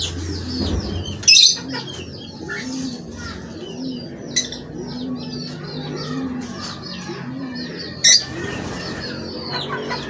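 Caged pigeons cooing in a low, repeated call, over continual high chirping from small cage birds. Two brief loud rushing noises break in, about a second in and again near the end.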